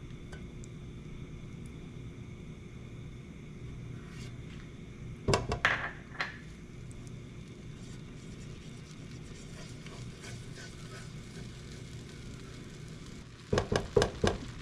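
Silicone spatula knocking and scraping against a nonstick frying pan and dish as vegetable spread is put in to melt. There is a short cluster of sharp knocks about five to six seconds in and a few more near the end, over a low steady hum.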